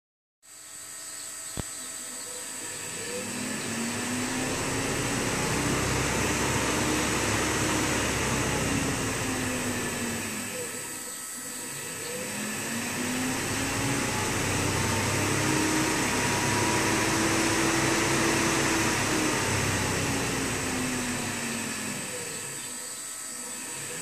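An AC motor driven by a homemade field-oriented-control AC controller speeds up and slows down twice. Its hum and fan noise rise and fall in pitch over several seconds each time, over a steady high whine. There is a single click about a second and a half in.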